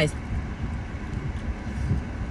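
Low, steady rumble inside a car cabin, like the car's engine or fan running at rest.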